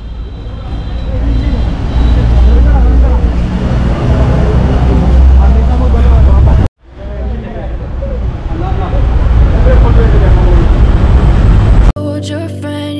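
Several people talking indistinctly over a heavy low rumble. The sound drops out for a moment about two-thirds of the way through, then the voices and rumble resume.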